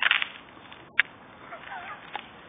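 Ice on frozen water cracking: a loud crackle at the start and a single sharp snap about a second later.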